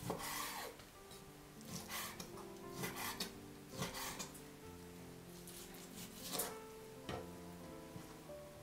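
Chef's knife cutting raw chicken thigh into pieces on a wooden cutting board: short, irregular scraping strokes of the blade on the wood, every second or so, over quiet background music.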